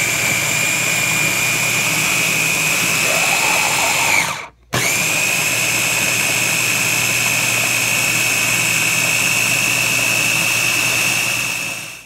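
Small electric food processor running flat out as it purees chickpeas and avocado, a steady whine. It cuts out briefly about four seconds in, spins back up and runs until it winds down near the end.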